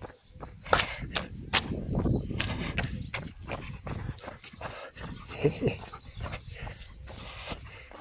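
Footsteps in trainers on an asphalt road at walking pace, about two steps a second, with a short vocal sound about five and a half seconds in.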